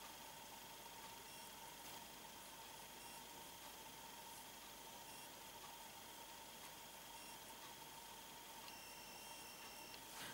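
Near silence: a faint steady hiss with a thin, steady high tone, the recording's background noise.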